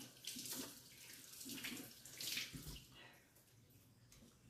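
Water from a kitchen faucet running faintly over hands being rinsed in the sink, splashing unevenly. It stops about three seconds in.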